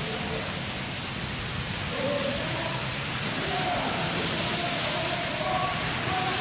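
Steady rushing noise of sea waves breaking on a sandy beach, with faint voices in the background from about two seconds in.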